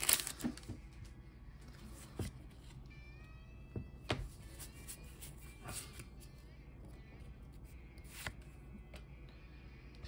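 A foil booster-pack wrapper crackles briefly, then Pokémon trading cards are handled quietly, sliding and flicking with a few separate soft clicks, while faint musical tones sound in the background.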